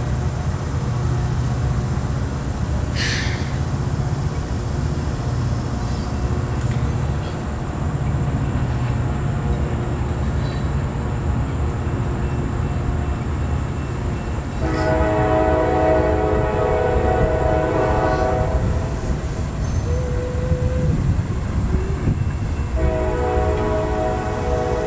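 CSX freight train rumbling steadily as its cars roll past a grade crossing. A locomotive horn sounds two long blasts, one of about four seconds starting some 15 seconds in and another starting near the end.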